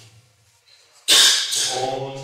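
A pause of about a second, then a man's voice into a handheld microphone starts abruptly with a loud breathy, hissing burst and runs on into speech.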